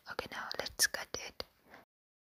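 Rapid whispering mixed with a run of quick clicks, about six a second, cut off abruptly just before the end.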